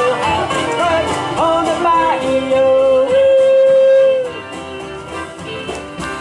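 Live country band with acoustic guitar, upright bass and pedal steel playing the closing bars of a song, with sliding notes, ending on a long held final note that stops about four seconds in. The music is quieter afterwards.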